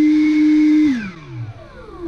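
Leaf blower motor running with a steady whine, then switched off about a second in, its pitch falling as it winds down.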